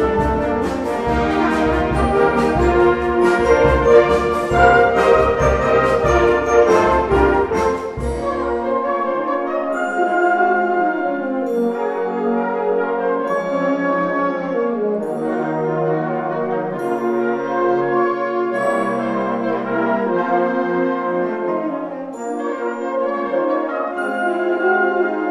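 Concert band playing. For the first eight seconds the full band plays with a steady beat of bass and percussion strokes. Then the bass and percussion stop, leaving a lighter passage of woodwinds and brass.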